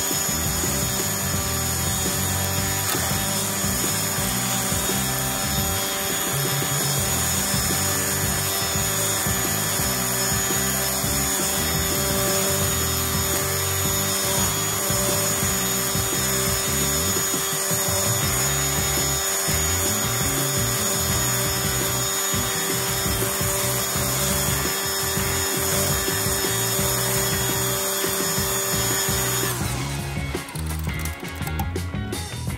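DeWalt brushless cordless string trimmer running at a steady speed, its line cutting grass along a sidewalk edge, with a steady motor whine. Background music plays along with it throughout.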